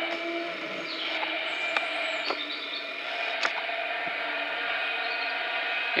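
Class 450 Desiro electric multiple unit moving off, a steady electric whine from its traction equipment with a few sharp clicks from the wheels.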